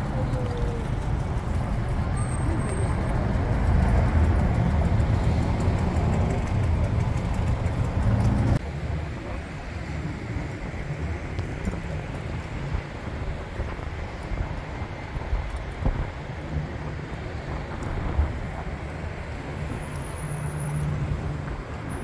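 Outdoor city ambience of steady road-traffic noise with a heavy low rumble. About eight and a half seconds in it drops abruptly to a quieter outdoor background.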